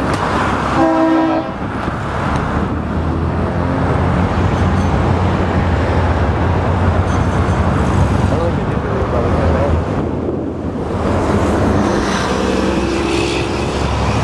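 Road traffic passing on a busy street, a steady rumble of car engines and tyres. About a second in, a vehicle horn gives one short toot.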